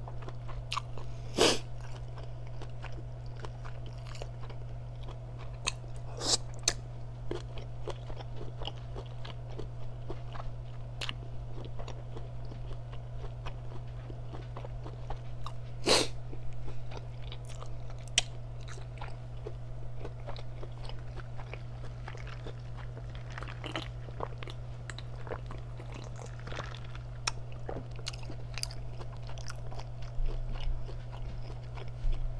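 Close-up eating sounds: crab legs being cracked open and the meat chewed, with sharp shell cracks about a second and a half in and again around sixteen seconds, and smaller clicks and crunches in between, over a steady low hum.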